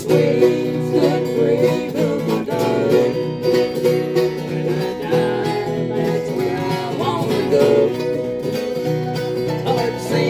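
Mandolin and acoustic guitar playing a bluegrass song together, with two voices singing.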